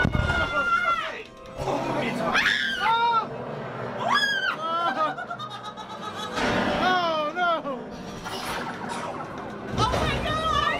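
Riders whooping and laughing in high rising and falling cries inside the Millennium Falcon: Smugglers Run cockpit, over the ride's music and effects soundtrack.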